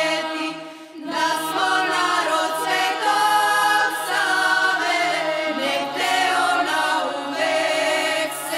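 A choir singing a Serbian patriotic song in harmony over a low held note. The singing dips briefly about a second in, then swells again.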